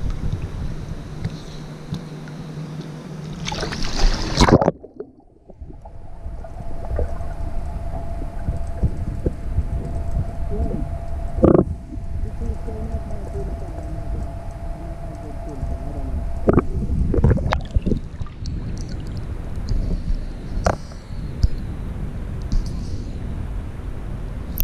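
Pool water sloshing around an action camera at the surface. About four and a half seconds in, the camera goes under and the sound turns muffled and dull, with a steady hum and scattered knocks and bubbles from the swimmer moving in the water. Near the end it surfaces again amid splashing.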